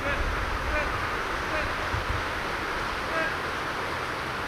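Steady wind on the microphone outdoors: a low rumble under an even hiss, with a few faint distant voices or chirps in it.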